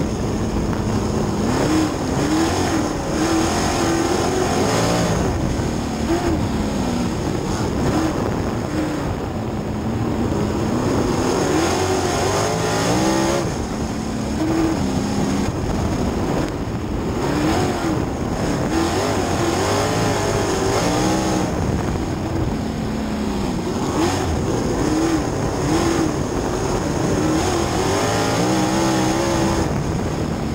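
Outlaw sprint car engine heard from inside the cockpit, its pitch climbing and dropping again and again every few seconds as the throttle comes on and off, over a steady rushing noise.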